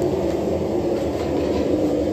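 Steady low mechanical rumble of running shop machinery, even in level throughout.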